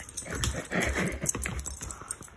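A dog making short, irregular play noises while it mouths and scuffles at a person's hand.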